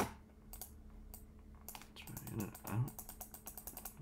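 Computer keyboard keys clacking in irregular taps: a few separate taps in the first two seconds, then a quicker run of taps in the last two.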